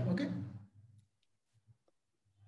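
A man says "okay", then a few faint, short clicks follow, as a computer mouse is clicked to advance a presentation slide.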